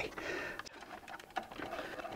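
Faint rustling and a few light clicks of hands handling wires and push-on connectors at a small plastic controller box.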